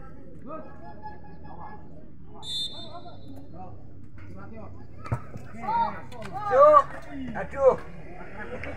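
Shouting voices from a youth football pitch, players calling out, loudest in loud rising-and-falling calls in the last three seconds. A short high whistle sounds about two and a half seconds in, and a single sharp knock comes just after five seconds.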